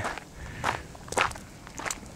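Footsteps crunching on a loose gravel and dirt trail while walking downhill, a step about every half second.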